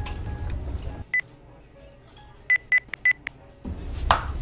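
Mobile phone keypad beeps as buttons are pressed on a flip phone: one short beep about a second in, then a quick run of about five more, all at the same pitch.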